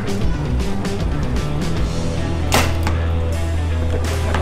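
Background music with a deep bass line and a steady beat, with one sharp hit about two and a half seconds in.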